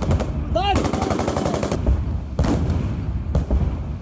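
Bursts of rapid automatic gunfire, many shots a second, in two long runs, recorded on a phone with a harsh, crackling sound. A short pitched sound rises and falls about half a second in.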